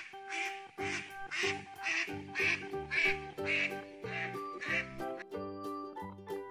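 A recorded duck quacking, a run of short quacks at about two a second that stops about five seconds in, played as the animal's sound effect over light background music.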